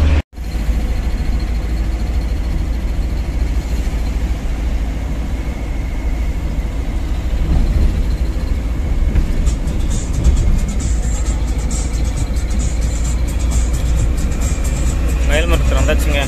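Steady low road and engine rumble inside a moving car's cabin at highway speed, with a brief dropout just after the start. A voice comes in near the end.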